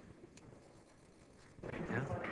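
Quiet room tone on a film set, with one faint click about half a second in; a voice starts near the end.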